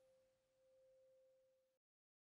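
Near silence: the faint dying tail of one held note from the closing piano music, cut off abruptly into total silence near the end.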